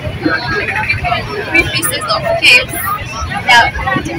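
People talking at close range over the background bustle of a busy open-air market.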